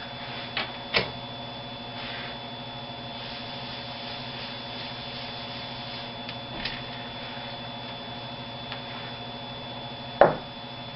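Light knocks about a second in as a chalkboard eraser is taken from the chalk tray, then faint rubbing of the eraser wiping a word off the blackboard, over a steady electrical hum.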